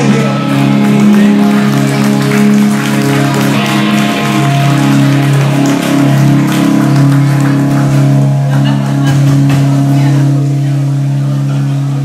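Live rock band with electric guitars and bass holding a steady sustained chord, with scattered drum and cymbal hits.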